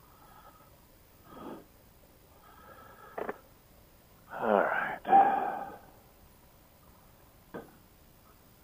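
A man's wordless groans and sighs of exasperation: two short sounds, then a longer, louder groan with a bending pitch about four seconds in.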